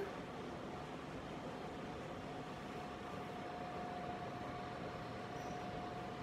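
Steady background hiss with a faint, even hum-like tone, as from an appliance or fan running in the room.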